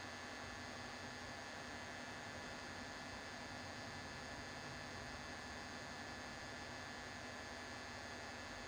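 Faint, steady electrical hum with hiss, holding a number of constant tones and never changing.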